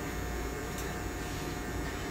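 Corded electric hair trimmer buzzing steadily while edging a hairline in a line-up.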